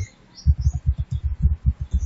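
Rapid typing on a computer keyboard: keystrokes heard as quick, dull thumps, several a second, starting about half a second in.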